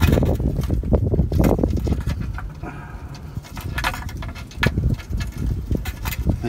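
Socket and extension clicking and knocking on the transmission pan bolts as the last of them are worked loose by hand, in irregular strokes over a low rumble.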